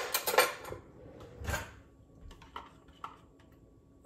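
Metal cutlery clinking and clattering as a spoon is fetched, with a dull knock about a second and a half in and a few light clicks after.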